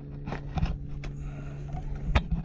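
A steady low mechanical hum, with a few short knocks and scrapes as a fish is hauled up by hand on a line over the boat's side.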